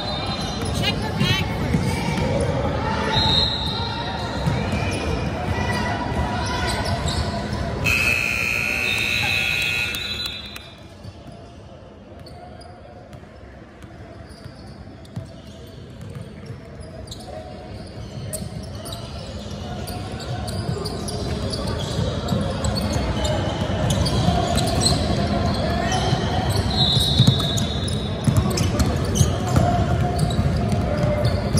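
Basketball being dribbled and sneakers squeaking on a hardwood gym court during play, with voices, in a large echoing hall. The court noise drops away for several seconds in the middle, then picks up again.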